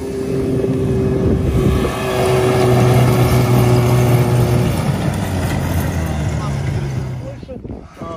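Yamaha snowmobile engine running as it tows a sled loaded with hay bales past, a steady engine note that grows louder about two seconds in and fades away about seven and a half seconds in.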